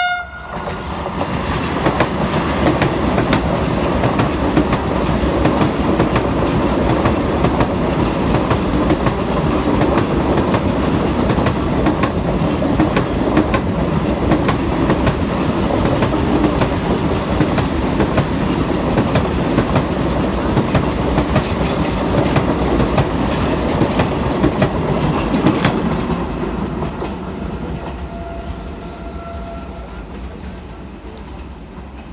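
Vande Bharat Express electric train set passing at speed close by: a loud, steady rush and rumble of wheels on rails, with clicking over the rail joints, that fades over the last few seconds. A faint, steady horn sounds briefly near the end.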